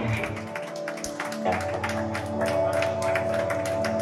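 Live rock band playing: electric guitars held over a steady drum beat with regular cymbal hits.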